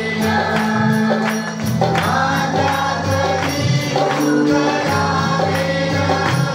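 Mixed group of voices singing a Marathi Christian worship song over instrumental accompaniment, with hand-clapping keeping a steady beat.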